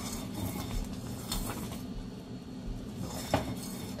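A long metal spoon stirring thick, boiling soup in a stainless steel pan and scraping along the bottom. A few sharper scrapes or clinks of metal on metal stand out, one about a second and a half in and another just past three seconds, over a steady low background.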